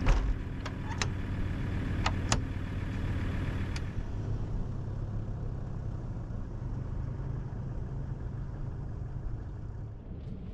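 A 4WD's engine running steadily at low revs, with several sharp clicks and knocks in the first four seconds.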